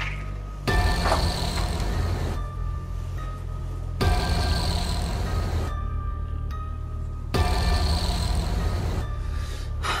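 Eerie horror-film score: a steady low drone under a hissing swell that cuts in and out in a slow, even pulse about every three and a half seconds.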